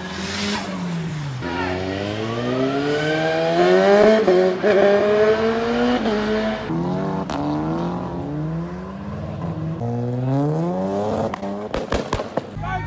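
Car engine accelerating hard along the street: its pitch climbs, drops back and climbs again several times through the gear changes, loudest about four seconds in.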